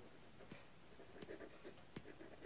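Faint scratching of a pen writing on a sheet of paper, in short scattered strokes.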